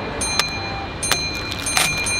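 Three sharp taps as a paper coffee cup and snack packets are set down on a glass tabletop, over the steady background noise of a large station hall with a faint high steady tone.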